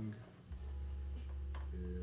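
Hands handling a Nike Dunk High sneaker, fingers rubbing and lightly scraping over its tongue and upper, with a few faint short scrapes. A steady low hum runs underneath from about half a second in.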